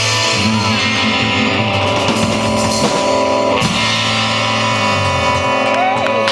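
Live rock band playing: electric guitars, bass and drum kit. The low bass notes stop near the end.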